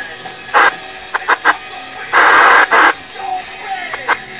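CB radio receiving music over the channel, broken by bursts of static: a short one about half a second in, three quick ones around a second and a half, and the loudest, lasting most of a second, about two seconds in.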